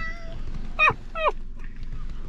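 Two short high-pitched cries about half a second apart, each sliding down in pitch, over a low steady rumble.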